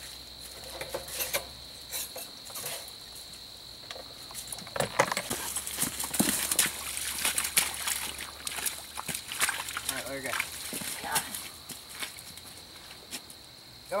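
Insects trilling at night, one steady high tone that stops about five seconds in, over a run of clicks, rustles and footsteps from handling gear at a truck and walking through grass. A few short call-like sounds come in between.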